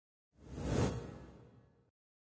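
Whoosh sound effect of a logo intro. It swells up about a third of a second in, peaks near the one-second mark, then fades and cuts off just before the end.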